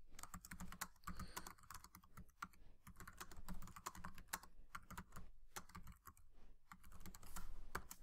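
Typing on a computer keyboard: a quick, uneven run of keystroke clicks as a short sentence is typed.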